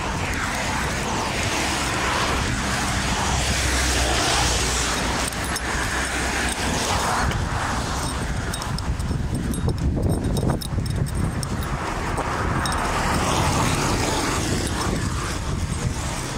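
Road traffic noise: a steady rush with a low rumble that swells and fades twice, as vehicles pass.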